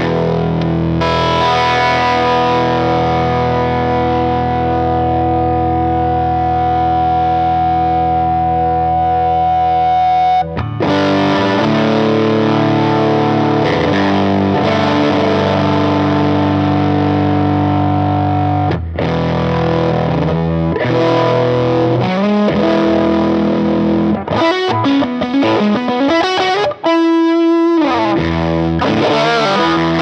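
Electric guitar, a Fender Stratocaster, played through a cranked Fuchs ODS-modded Bassman tube amp with overdrive distortion. The first chord rings for about ten seconds, then comes a series of held chords. Near the end the playing turns to shorter, choppier notes with a couple of bends in pitch.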